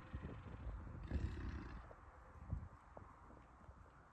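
Faint low grunt from an American bison about a second in, over soft outdoor rustle and a few light thumps.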